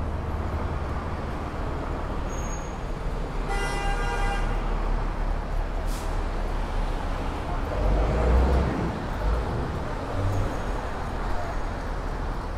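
City street traffic rumble, with a vehicle horn sounding once for about a second a few seconds in. There is a sharp click about six seconds in, and a vehicle passes loudly around eight seconds in.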